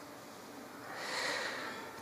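A man drawing a soft breath close to a microphone, the rush of air swelling about a second in.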